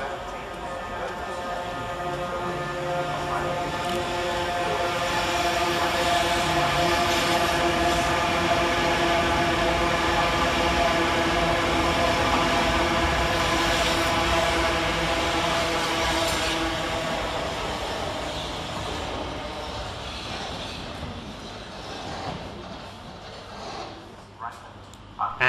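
Class 395 Javelin electric multiple unit passing fast through the station without stopping. It grows louder over the first few seconds, is loudest from about a quarter to two-thirds of the way through, then fades away. A rush of wheels and air carries a steady whine of several tones.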